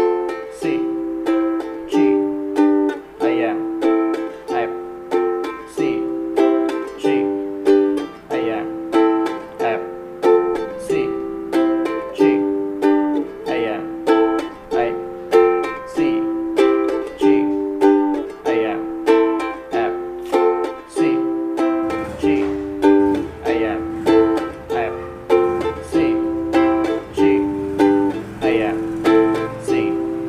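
Ukulele strummed in a steady, even rhythm, repeating the chord cycle F, C, G, A minor. A faint low rumble joins underneath about two-thirds of the way through.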